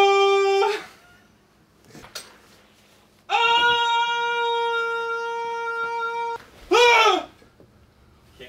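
A wooden whistle blown in long, steady notes: a short note, then a longer, higher one of about three seconds, then a quick swoop up and back down near the end.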